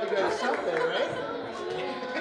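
Indistinct chatter of several overlapping voices, with no words that can be made out.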